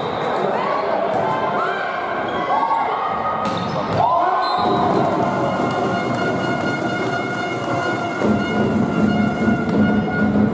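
Indoor volleyball court sound in a sports hall: thuds of the ball, short sharp squeaks and voices. Music comes in about eight seconds in.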